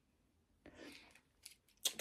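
Mostly near silence. Faint mouth sounds come from a pause in talking: a soft breath about halfway through and a couple of tiny clicks, with a fingertip held at the lips, before speech resumes at the very end.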